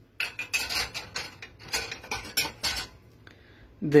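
Dishes and a drinking glass clinking and rattling against a metal wire dish rack as they are handled. A quick run of knocks lasts nearly three seconds, with one faint click after it.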